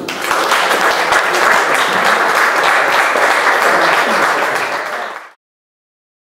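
Audience applauding, a dense steady clapping that starts just as the speech ends and cuts off suddenly about five seconds in.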